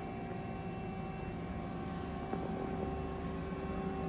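Steady hum with several constant tones from an idle, powered-up Haas ST-20 CNC lathe, with no cutting or spindle run-up.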